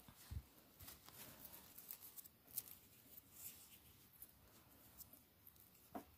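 Very faint small clicks and rustles of fingers handling a metal necklace chain and jump ring, close to near silence.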